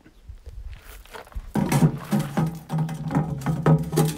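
Lortone TS-10 10-inch lapidary trim saw switched on about a second and a half in, its motor then running with a steady hum.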